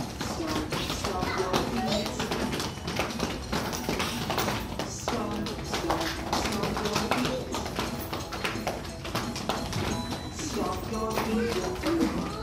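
Small children stomping and tapping their feet on the floor over and over, with a children's counting song playing.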